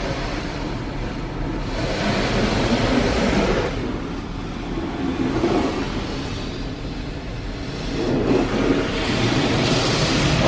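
Automatic drive-through car wash heard from inside the car's cabin: water spray and brushes running over the body, a steady rumbling rush that swells louder a couple of seconds in and again near the end as the equipment passes.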